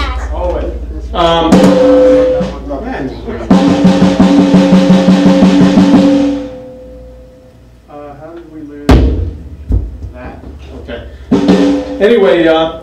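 Acoustic DDrum Reflex drum kit with Istanbul Mehmet cymbals: a crash struck a few seconds in rings with the drums for about three seconds and dies away, followed later by a single sharp hit and a lighter one.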